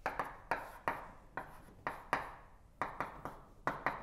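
Chalk writing on a chalkboard: an irregular series of sharp taps and short scratching strokes, about two or three a second.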